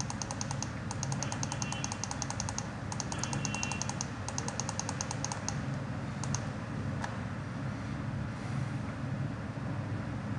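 Steady low background hum with a fast, even electronic ticking through roughly the first five and a half seconds, then a single mouse click about seven seconds in.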